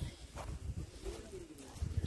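A bird cooing faintly: a soft, low call about a second in, over a low background rumble.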